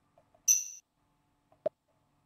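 A short, high computer alert chime that fades quickly, the error sound that goes with an SAP GUI error message. A single mouse click follows about a second later.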